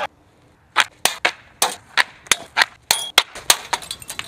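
A quick, irregular run of about a dozen sharp cracks, a few each second, starting about a second in, after a short quiet gap.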